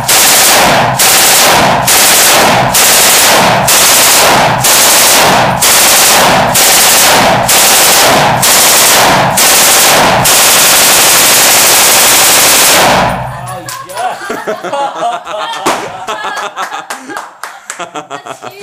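PKM belt-fed machine gun (7.62×54mmR) firing loud short bursts about once a second, then one unbroken burst of about three seconds that stops abruptly about thirteen seconds in.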